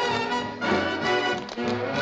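Orchestral dance music from a film score, with brass playing sustained notes.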